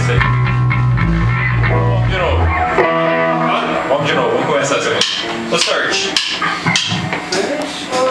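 Rock band playing: electric guitar and bass with a voice singing. The low bass notes drop out about three seconds in.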